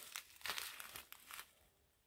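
Small plastic zip-lock bags of diamond-painting drills crinkling faintly in the hands, in short irregular rustles that die away about halfway through.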